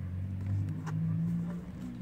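A low engine drone with a few steady pitch lines, strongest in the middle and dying away near the end, with a couple of faint clicks.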